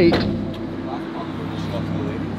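A supercar engine idling steadily, a low even hum.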